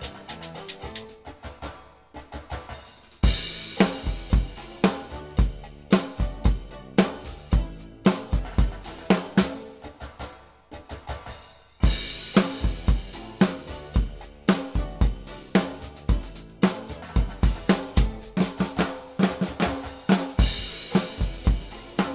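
Drum kit playing a rock beat. Light playing at first, then a crash and a full kick-and-snare groove from about three seconds in. The playing drops back for a moment past the middle and comes in again with a crash about twelve seconds in.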